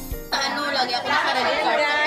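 A music track stops abruptly at the very start, then several people's voices chatter and talk over one another.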